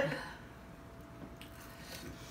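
A woman's laugh trails off, then faint bites and chewing on chicken wings in a quiet small room, with a couple of small clicks.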